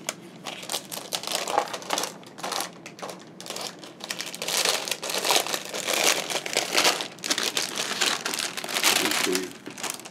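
Clear plastic bag crinkling and rustling as plastic model-kit sprues are handled and pulled out of it, in irregular crackles that grow louder about halfway through.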